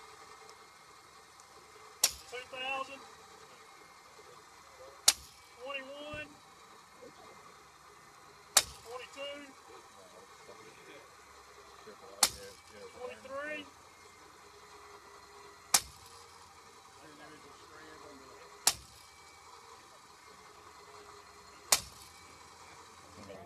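Rope-pull test rig under winch load giving seven sharp clicks, one about every three seconds, as the rope is hauled toward its failure load. Quiet voices between the clicks.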